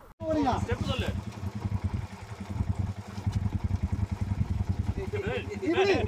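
Motorcycle engine running under way on a dirt track, a rapid even pulse of firing strokes. Voices call out briefly just after it starts, and a group starts cheering near the end.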